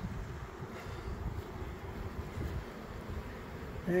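Strong gusty wind rumbling on the microphone, with honey bees buzzing around the entrance of a swarm box.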